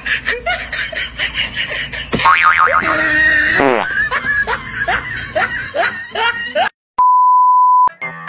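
Edited comedy sound track: a big sweeping cartoon-style sound effect a couple of seconds in, then a run of short rising squeaky sounds. It ends in a steady censor bleep lasting about a second.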